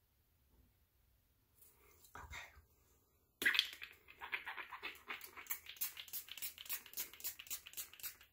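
A person sniffing a facial mist in quick, breathy sniffs, about five a second, starting suddenly about three and a half seconds in, after a brief faint sound about two seconds in.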